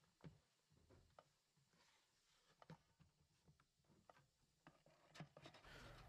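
Near silence, with a few faint, short clicks and taps of hands handling the plastic catch basin and wash plate of a pad-washer bucket.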